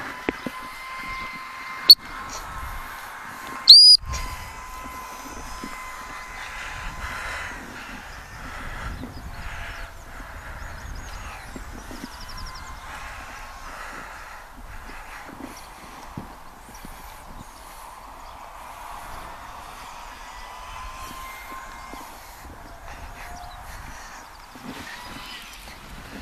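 A single short, high-pitched blast of a gundog whistle about four seconds in, just after a sharp click. Otherwise there is quiet open-field background with a faint steady hum.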